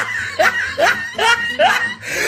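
Laughter: a run of short rising "ha" sounds, a little over two a second.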